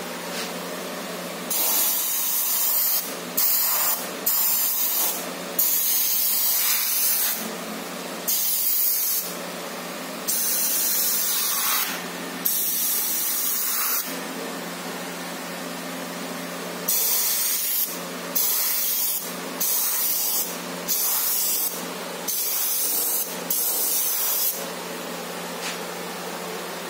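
Gravity-feed airbrush spraying paint in short bursts of hiss, cutting on and off about a dozen times as the trigger is pressed and released, with a pause of about three seconds midway. A steady low hum runs underneath.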